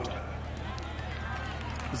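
Open-air ambience between sentences of an amplified speech: a steady low hum with faint, distant voices.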